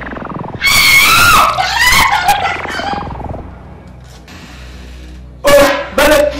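A loud scream with a wavering pitch lasts nearly three seconds, starting about half a second in, over a sound-effect tone that slides steadily down in pitch. A short loud vocal cry comes near the end.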